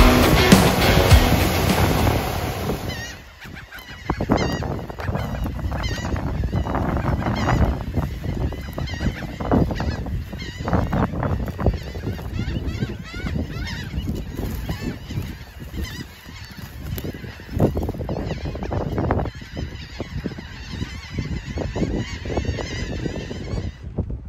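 Loud music for the first three seconds. Then a large flock of birds calling in the air, many calls overlapping and wavering in pitch, carrying on steadily to near the end.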